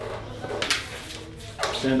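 A boxer's claws scraping and clicking on a stainless steel exam table as the dog is lifted onto its feet, with one sharp click a little under a second in. A man says "stand" at the very end.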